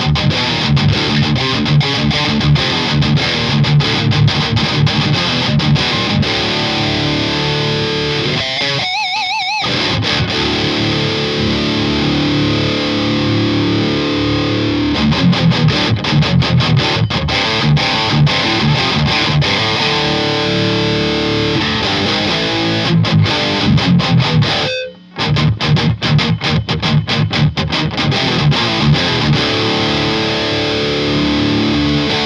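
Heavily distorted electric guitar played through a Randall RH100 solid-state amplifier head on its overdrive channel, miked at a Celestion Vintage 30 speaker: fast chugging metal riffs mixed with held notes. A wavering held note sounds about nine seconds in, and the playing stops for an instant about 25 seconds in before the riff resumes.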